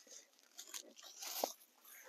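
Faint rustling and crunching of dry leaves and garden debris being handled by gloved hands at the pond's edge, with one short squeak a little after halfway.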